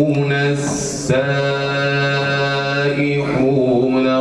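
A man chanting in Arabic in a slow, melismatic style, holding long steady notes. There is a short break for breath about a second in.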